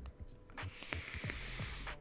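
Long drag on a vape: a steady, high, airy hiss of air drawn through the atomizer while the coil fires. It starts about half a second in and cuts off suddenly near the end.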